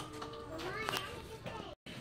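Background voices of children talking and playing in a shop, faint and high-pitched. The sound drops out completely for a moment near the end.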